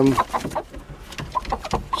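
Domestic hen clucking: a few short, separate clucks.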